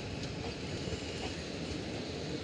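Passenger train coaches rolling slowly past as the express departs, their wheels running steadily on the rails with a few faint clicks.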